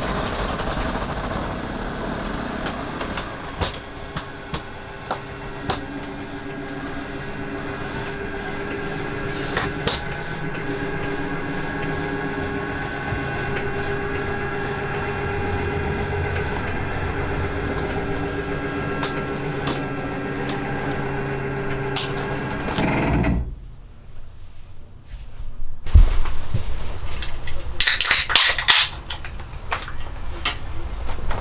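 RV slide-out motor running the room out: a steady mechanical hum with a few clicks, stopping abruptly about 23 seconds in. Near the end, after a short lull, a thump and then a loud burst of bright hissing noise.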